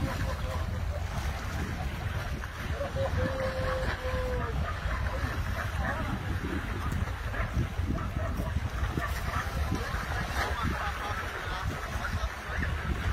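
Steady wind rumbling on the microphone. About three seconds in, a faint drawn-out call is heard, held for under two seconds and dipping slightly at the end.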